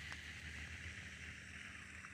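Faint, steady low hum with a light hiss, heard on board a small fishing boat on the water.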